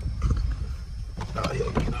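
A car's engine idling, a low steady rumble heard inside the cabin, with faint sounds of movement and a muttered word near the end.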